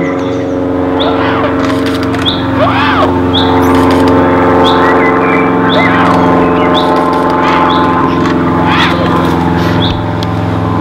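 A steady motor drone made of several even tones runs throughout. Over it, short rising-and-falling calls repeat roughly once a second at uneven gaps.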